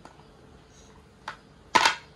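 A pestle striking chopped garlic and shallots on a wooden cutting board to crush them: a light knock about a second in, then a loud sharp strike near the end.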